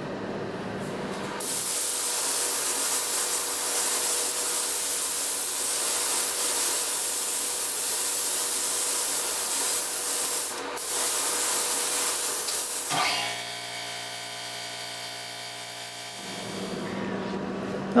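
Compressed-air gravity-feed paint spray gun hissing steadily as primer is sprayed onto an engine block, with a brief break near the middle. After about thirteen seconds the hiss stops and a steady hum of fixed pitch runs for about three seconds.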